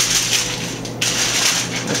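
A sheet of aluminum foil crinkling as hands spread it out on a cutting board, with a fresh burst of crinkling about halfway through.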